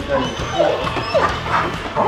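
A German Shepherd police dog whining in several short cries that rise and fall in pitch, over background music.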